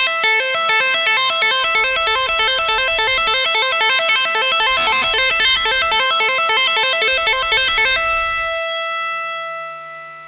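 Electric guitar, a Stratocaster-style instrument, playing a fast, even two-handed tapping pattern on the high E string. A right-hand tap at the 12th fret pulls off to the 5th fret, then a pinky hammer-on sounds the 8th fret, giving a repeating A–C–E arpeggio. The run stops about eight seconds in, and the last note rings out and fades.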